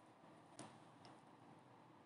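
Near silence: faint room tone with two soft, short ticks, the first about half a second in and the second about half a second later.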